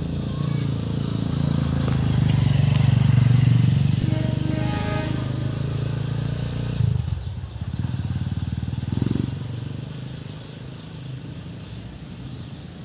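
A motor vehicle engine running close by, a steady low rumble that is loudest in the first seven seconds and then drops away, with a brief rising whine about four to five seconds in.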